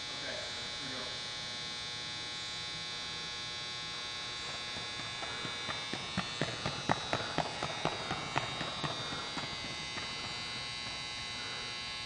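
Running footfalls on a rubber indoor track: a quick run of sharp steps, about four or five a second, growing louder as the sprinter passes and then fading. A steady electrical hum sounds throughout.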